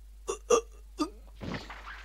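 Three short hiccup-like gasps from a startled cartoon demon. About one and a half seconds in, a noisy rush builds as the sound effect of a rapid-fire spirit-energy blast begins.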